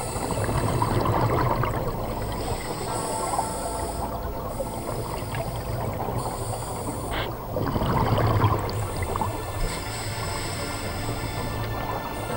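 Scuba diver breathing through a regulator underwater: hissing inhalations and two louder rushes of exhaled bubbles, one near the start and one about eight seconds in.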